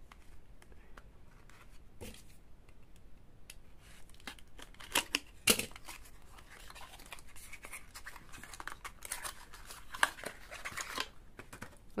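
Small cardboard box being handled and opened by hand: its flaps pulled open and a plastic cream jar slid out, with light scraping, rustling and several sharper clicks.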